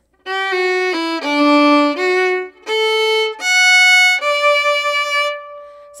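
Solo fiddle playing a short phrase of a waltz in D major: a few notes stepping down a scale, then a rising arpeggio, ending on a long held note that fades near the end.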